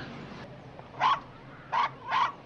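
A dog barking twice in short, sharp barks.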